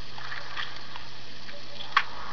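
Steady background hiss with a faint low hum, and one short click near the end.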